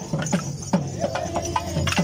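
Short wooden dance sticks clacked together by kaliyal stick dancers in a quick steady rhythm, about three or four strikes a second, each with a low thud under it.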